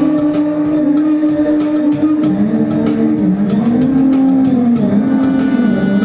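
Clarinet holding a long note, then playing a slow, wavering line that bends up and down in pitch, over a steady ticking percussion beat.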